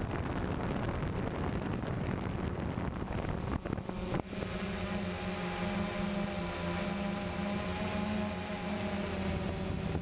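DJI Phantom quadcopter's motors and propellers buzzing, heard from the camera on board, mixed with wind rushing on the microphone. About four seconds in, after a brief dip, the buzz settles into a steady hum.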